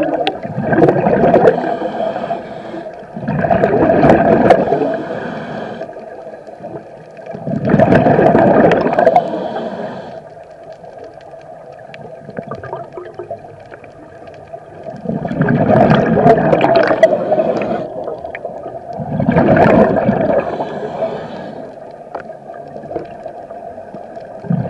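Scuba regulator exhaust bubbles heard underwater: five bubbling bursts of about two seconds each, one with each exhalation, with a long pause in the middle.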